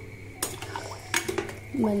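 A spoon stirring tomato rice in a metal pressure-cooker pot, giving about three sharp knocks against the pot's side and rim.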